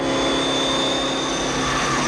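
Pontiac Trans Am at full throttle, accelerating hard: a steady engine note with a high whine over it and a rush of tyre and road noise.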